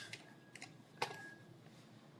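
Three faint clicks from a laptop being operated, about half a second apart, the last one the loudest.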